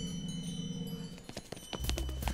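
Cartoon magical shimmer effect: faint chime-like ringing over a low steady hum. Near the end it gives way to a quick run of clicks and an impact thud.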